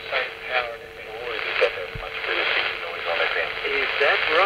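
Audio from a homebrew direct-conversion phasing SSB receiver: band-limited hiss with a faint, muffled single-sideband voice. A steady heterodyne whistle drops out about halfway through.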